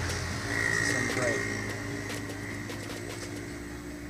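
Steady outdoor background hum, with a faint voice briefly about a second in.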